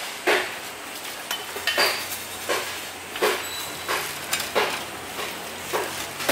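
Meat cleaver chopping through a pig carcass's ribs on a cutting board, a steady series of sharp blows about three every two seconds.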